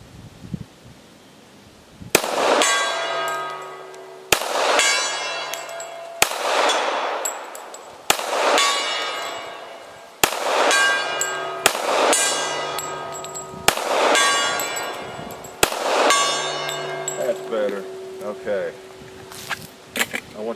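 Colt 1911 .45 ACP pistol fired in a slow string of about eight shots roughly two seconds apart, each hit setting a hanging steel plate target ringing, the ring fading before the next shot.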